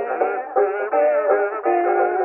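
Kazoos buzzing the tune together in harmony, with banjo, played from a 1924 Edison Diamond Disc record.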